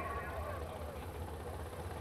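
Low, steady rumble of jet boat engines idling at the start line, heard from a distance across the water.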